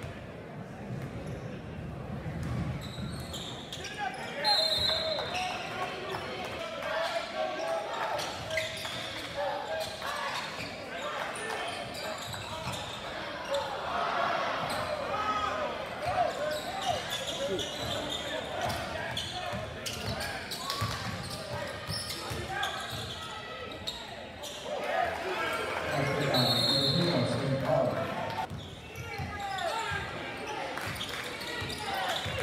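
Crowd murmur and chatter in a gymnasium during a basketball game, with a basketball bouncing on the hardwood court. A short high whistle blast, likely the referee's, comes about four seconds in and another near the end.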